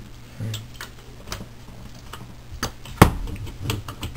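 Clicks and light metallic clatter of a car stereo's sheet-metal casing and plastic parts being handled and pried apart by hand, with one sharp knock about three seconds in.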